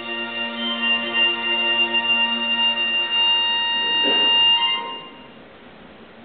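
Live band music holding one long sustained chord with a reedy, organ-like tone. It dies away about five seconds in, leaving a quiet pause.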